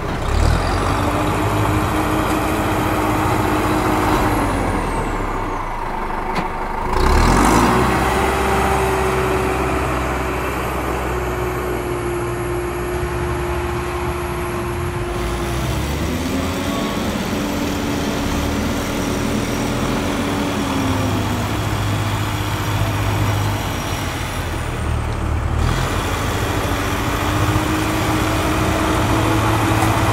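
Truck-mounted crane's engine running steadily, its pitch stepping up and down several times as the hydraulic crane is worked to lift the transformer.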